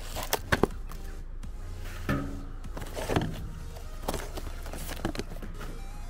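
Cardboard box of sealant cartridges being torn open and handled, with short sharp crackles and knocks about once a second over a low steady rumble. Near the end a cartridge is drawn out of the box.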